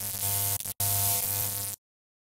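Harsh electronic static with a steady hum under it, used as a glitch sound effect for a logo intro. It drops out for an instant under a second in and cuts off suddenly near the end.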